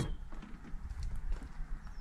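Faint, irregular light clicks and scuffs over a low rumble on the microphone.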